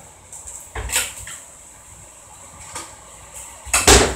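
Kitchen handling noises: a knock about a second in, then a louder clatter near the end, over faint room tone.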